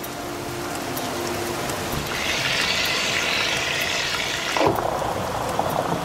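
Water rushing and swirling down through a hyperbolic vortex funnel, a steady rush that slowly grows louder, with a brighter hiss through the middle.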